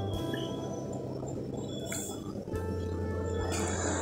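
Soft background music over the low bubbling of a pan of milk with chutki pitha simmering on the stove.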